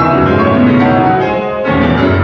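Concert grand piano played loudly in a dense passage, many notes sounding and ringing on together.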